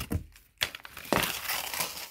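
A cardboard box and the folded fabric inflatable inside it being handled: a brief scrape about half a second in, then crinkling and rustling.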